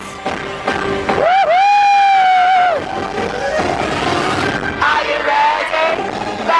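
Live pop-style band with amplified female vocals in a stage musical; a singer holds one long note starting a little over a second in, letting it waver as it ends, with more sung phrases after.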